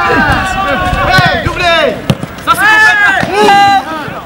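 Several men shouting and cheering over one another ('allez, allez'), loud and overlapping, with a single sharp knock about two seconds in.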